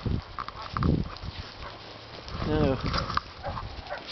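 Two dogs moving and nosing about in snow, with scattered rustling and crunching and a short, high, wavering vocal sound about two and a half seconds in.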